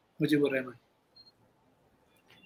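A man's voice speaking briefly at the start, then a pause of near silence with a faint short beep-like tone about a second in.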